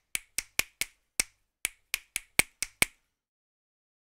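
Sampled finger snaps from EZdrummer 2's one-shot pad, triggered about a dozen times at an uneven pace and stopping about three seconds in.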